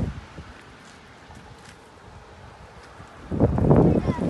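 Quiet, steady hiss of rain on a wet street with a few faint ticks. Near the end a gust of wind buffets the phone's microphone with a loud, low rumble.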